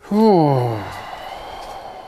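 A man's groaning sigh of frustration: a voiced 'ugh' sliding down in pitch that trails off into a long breathy exhale.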